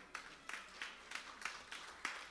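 Faint scattered clapping from a church congregation, a few hand claps a second.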